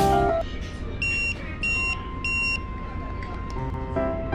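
Three short, high electronic beeps about half a second apart, then a faint steady tone, over a low background hum. Guitar music stops shortly after the start.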